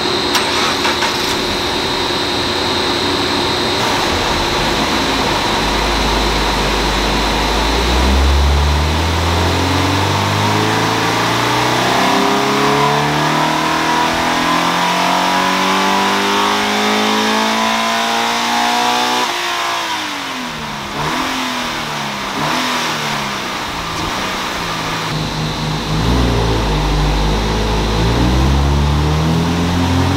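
Toyota GT86's naturally aspirated flat-four boxer engine, with stock exhaust, running on a Dynapack hub dyno. It idles, then makes a power run, the revs climbing steadily for about 13 seconds before the throttle is shut and the revs fall away. Near the end a second pull begins.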